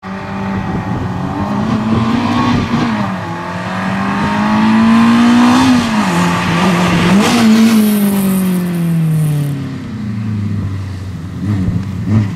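Peugeot 205 Group N slalom car's four-cylinder engine revving hard as it passes close by, the pitch climbing and dropping several times with shifts and lifts. It then falls away in one long run-down as the car slows for the cones and settles into a low, steady note near the end.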